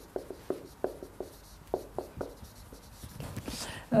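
Marker pen writing on a whiteboard: a quick run of short, separate strokes as the pen moves across the board.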